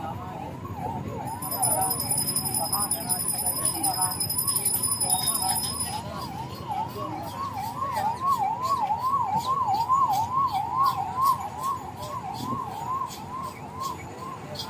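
A siren-like electronic tone, wailing up and down about twice a second without pause, over a background of outdoor crowd noise. A thin high whistle sounds with it during the first half.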